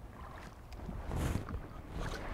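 A small spotted bass splashing at the water's surface as it is reeled in to the boat's side, with one stronger splash a little past the middle.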